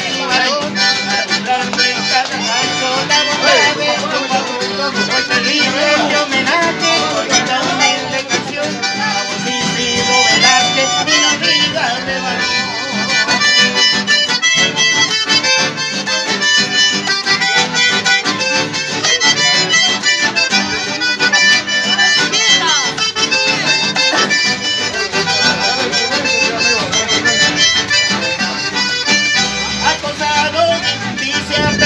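Piano accordion playing the melody of a folk song, with acoustic guitar strumming along in an instrumental passage without singing.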